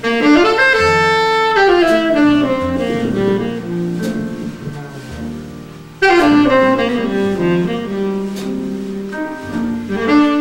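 Live jazz band: a saxophone plays two falling phrases, one at the start and another about six seconds in, over piano, double bass and drums.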